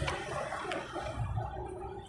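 Faint, uneven noise on a phone line, with no one speaking.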